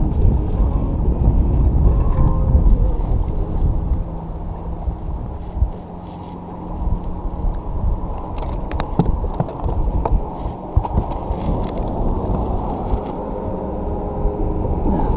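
Low rumble of wind and handling noise on a body-worn camera's microphone, with a steady low hum under it and a few sharp clicks and knocks past the middle as a bass is reeled in and landed.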